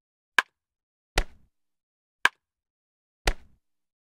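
Editing sound effects for on-screen text popping in: a sharp click, a duller thud, a second click and a second thud, each about a second apart, with dead silence between them.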